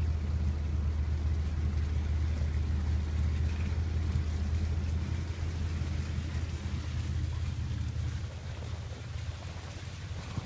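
Low, steady drone of a vehicle's engine and road noise heard from inside the cab, easing off somewhat over the last few seconds.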